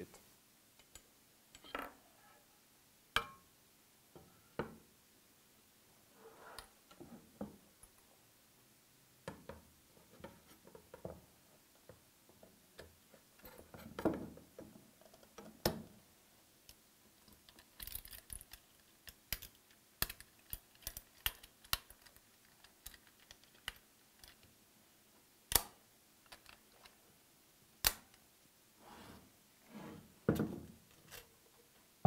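Scattered clicks and knocks of the aluminium FMHD vacuum area gripper being handled on a wooden workbench as its quick-change profile is fitted back on and tightened. A few sharper clicks stand out, and there is a short run of faint quick ticks a little past halfway.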